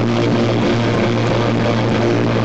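Live psychedelic rock band playing loud, with a low note held steadily under a dense, noisy wash of instruments, recorded from within the crowd.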